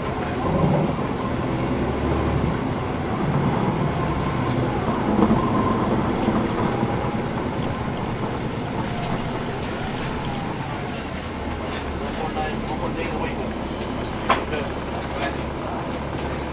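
Inside a NABI 40-SFW transit bus under way: its Cummins ISL9 diesel engine runs with a steady low drone under the cabin noise, with scattered rattles and clicks and one sharp knock near the end.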